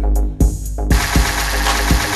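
Live electronic music played from Loop Drop: a deep bass and sampled 808-style drum hits at 120 bpm. The high end drops out for a moment about half a second in, then a bright noisy wash comes back in just before one second.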